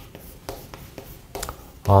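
Chalk writing on a chalkboard: a few short scratching strokes and taps of the chalk on the board.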